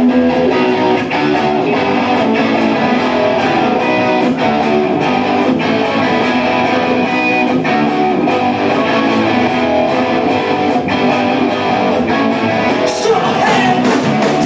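Hard rock band playing live, with electric guitars, bass and a drum kit at full volume. Cymbal hits keep an even beat of about four a second, and a crash cymbal rings out near the end.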